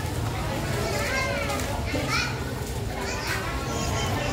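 Young children's high voices calling out about three times, with a steady low rumble underneath.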